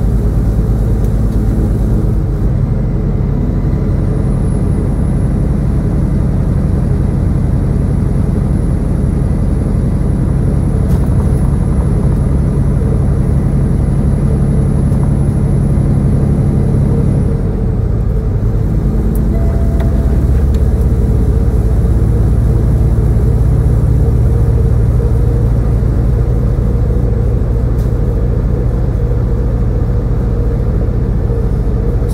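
Peterbilt 579 semi-truck's diesel engine and road noise droning steadily inside the cab while cruising on the highway. The engine note shifts a little past halfway through.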